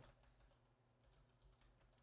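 Faint typing on a computer keyboard: a few soft, scattered keystrokes.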